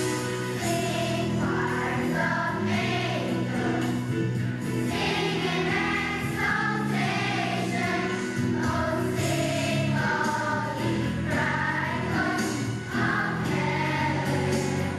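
Large children's choir singing with musical accompaniment, holding long notes.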